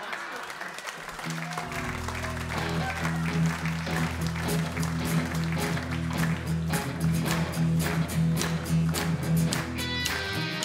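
Audience applause, and about a second in a small live band starts an upbeat instrumental intro on electric and acoustic guitars, bass guitar and drums, with a steady beat and the applause carrying on under it.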